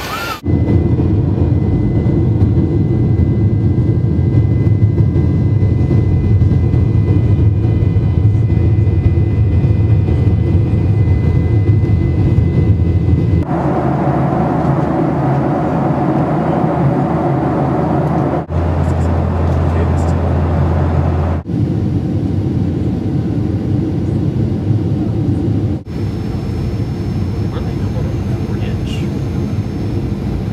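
Steady low engine and air noise inside a jet airliner cabin, heard as several short clips joined by abrupt cuts, each with a slightly different pitch and level. The last clip is the jet rolling along the runway.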